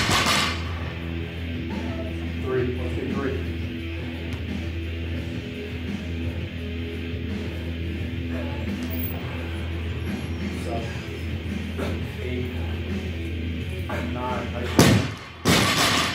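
Guitar rock music plays steadily throughout. About 15 s in, a loaded barbell with rubber bumper plates is dropped onto the gym floor: a loud thud, then a second hit as it bounces, ending a set of thrusters.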